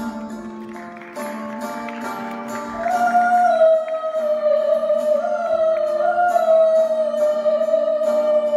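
Live music: a singer's voice holding long, wavering notes, coming in strongly about three seconds in, over a plucked string accompaniment.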